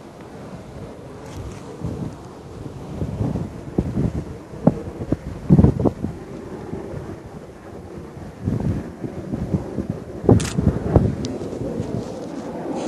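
Wind buffeting the microphone in uneven gusts, with a few scattered knocks and thumps, the loudest about halfway through and another near the end.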